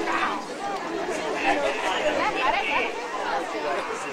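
Indistinct chatter of several overlapping voices, spectators talking, with no clear words.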